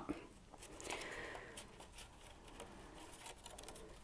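Faint rustling and small clicks of a knitting machine punch card being handled and curled by hand while its two ends are lined up.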